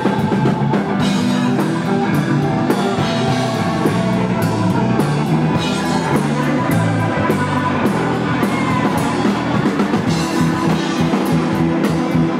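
A live blues band plays an instrumental passage, with no vocals: a hollow-body electric guitar over a drum kit and electric bass. The guitar has some bent, gliding notes.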